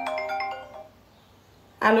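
A phone ringtone: a few overlapping chime notes that fade out within the first second.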